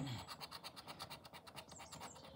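Plastic poker chip edge scratching the latex coating off a scratchcard, with faint, rapid, even strokes about a dozen a second.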